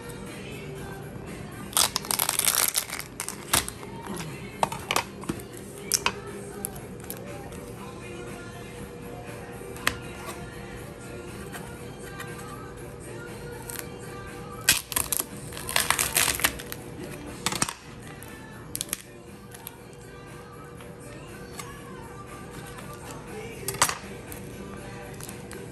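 Lobster tail shells being cut with a knife and pried apart on a plastic cutting board: crackling crunches of shell in bursts about two seconds in and again around fifteen seconds, with scattered single clicks in between. Steady background music plays throughout.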